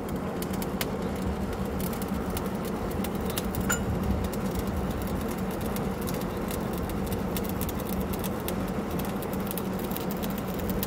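Truck-mounted borewell drilling rig running steadily: a constant, even machine hum with a scatter of sharp clicks and ticks throughout.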